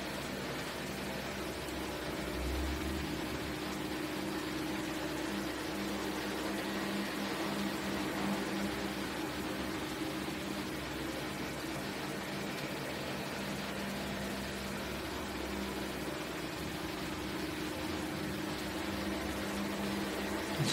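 Steady low hum over an even hiss of background noise, with no speech.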